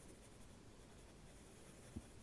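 Faint scratching of a pencil drawing on sketchbook paper, very quiet.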